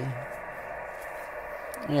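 Steady receiver hiss from an Icom IC-7100 transceiver in USB mode on the 6 m band: even noise with no highs and no station on frequency.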